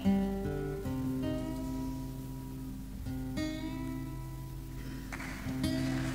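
Solo acoustic guitar playing the slow fingerpicked intro of a folk song live, single notes and chords plucked and left to ring. A new phrase comes about three and a half seconds in, and more plucks come near the end.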